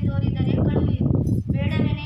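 A girl's voice speaking stage lines in long, wavering tones, in two stretches with a denser patch of voice sound between them.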